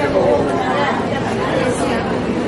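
Speech only: a man talking into a handheld microphone, his voice carried on continuously.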